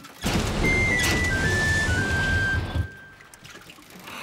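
Cartoon sound effect of a small boat setting off: a rush of churning water and motor noise lasting nearly three seconds, with a short high-pitched tune of stepping notes over it, then fading away near the end.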